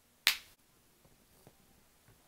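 A single sharp finger snap.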